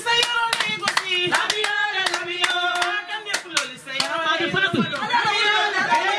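A group singing to steady rhythmic hand clapping, about two to three claps a second. In the last couple of seconds the singing gives way to a mix of overlapping voices.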